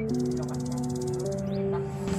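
Background music of held, chord-like notes that change pitch every second or so, with a fast, even rattle over the first second and a half and a short chirp-like glide near the end.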